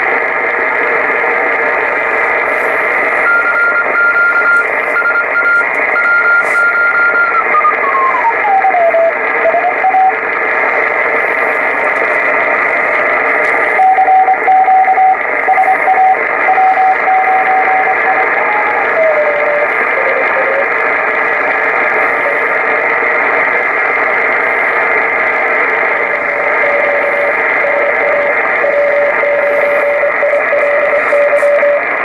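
Collins KWM-2A shortwave transceiver receiving through its speaker: a steady rush of band noise and static, with a thin whistling tone that keys on and off. The tone slides lower in pitch twice as the tuning dial is turned across signals.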